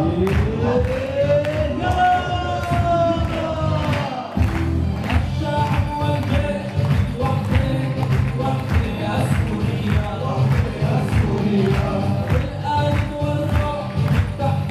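A group of male singers performing an Arabic song through microphones over a steady beat of about two strokes a second. Near the start one voice slides up into a long held note that ends about four seconds in.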